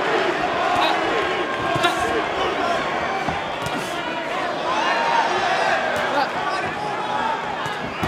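Arena crowd shouting and cheering during a boxing bout, many voices blending into a continuous din. A couple of sharp thuds in the first two seconds, typical of punches landing.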